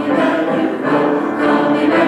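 Mixed choir of men and women singing held chords, the harmony shifting every half second or so.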